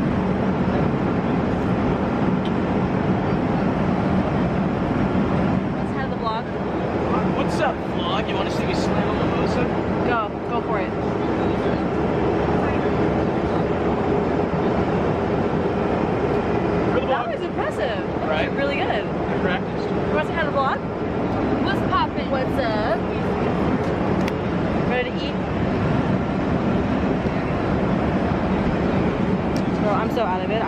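Jet airliner cabin noise: a steady engine roar with a constant low hum, with indistinct voices of people talking in the cabin over it.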